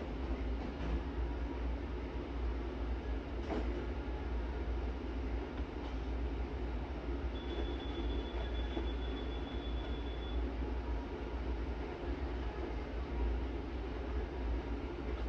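Steady low hum of commercial kitchen equipment running, with a few faint knocks in the first four seconds and a thin high tone for about three seconds midway.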